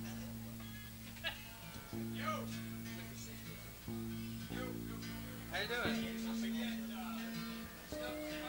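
A low guitar note is plucked and left to ring, then struck again several times, each time for a second or two, as an instrument is tuned up between songs. Voices talk over it.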